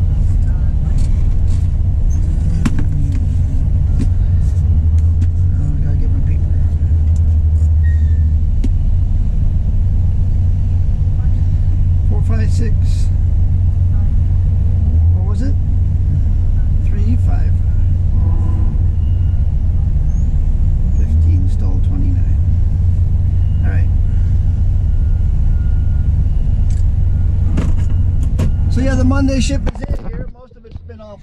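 A truck's diesel engine idling steadily, heard from inside the cab as a constant low rumble, with a few brief fragments of low speech over it.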